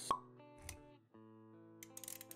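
Intro music for an animated logo: held notes with a sharp pop sound effect right at the start and a second, softer hit a little over half a second in.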